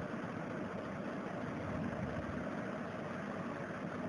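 Steady low background hum and hiss with no distinct events: room noise picked up by the recording microphone.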